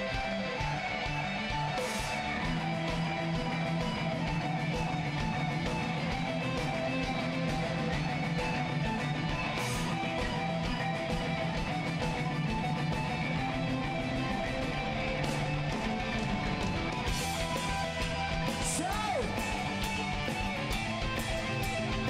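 Heavy metal band playing live at full volume: electric guitars and bass guitar over a steady drum beat.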